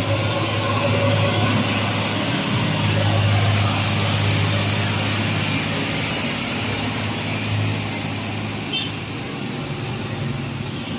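Hino 500 tanker truck's diesel engine pulling steadily as the truck drives past, a low drone that eases slightly near the end. A brief high chirp sounds near the end.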